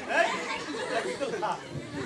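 Only speech: several voices talking and chattering at once, none of it clear words.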